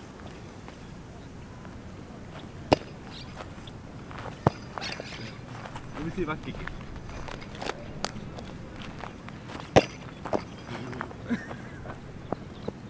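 Footsteps on grass and dirt close by, with three sharp knocks standing out among them, and faint voices in the background.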